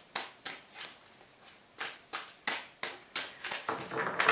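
Tarot cards being shuffled by hand: a run of crisp card slaps, about three a second, with a short pause around one second in.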